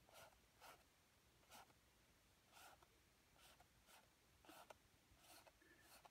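Faint, short swishes of an oil-paint bristle brush stroked across the painting surface, repeating irregularly about one or two a second.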